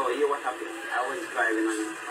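A man speaking on a television broadcast that is played back through a TV's speaker, thin and without bass.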